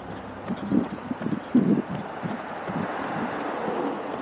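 A runner's footsteps thudding in a rough rhythm while wind buffets an action camera's microphone, the wind noise building in the second half.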